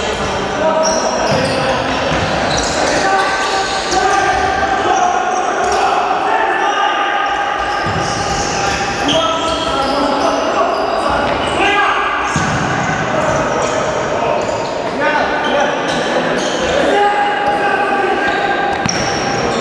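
Sound of a futsal game in a reverberant sports hall: players shouting to each other while the ball is kicked and bounces on the wooden court.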